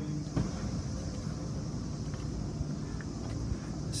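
Steady high-pitched drone of summer insects over a low outdoor rumble, with a single knock about half a second in.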